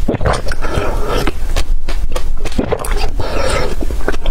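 Close-miked gulping and slurping of water thick with soaked seeds from a glass, a steady run of swallows with many wet mouth clicks.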